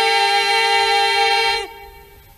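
A cappella choir of female voices holding one long steady chord in Bulgarian folk style. The chord breaks off about a second and a half in, leaving a brief quiet pause.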